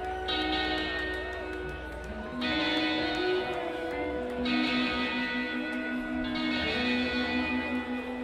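Rock band playing a song's instrumental intro live, with amplified guitars holding long chords that change every two seconds or so.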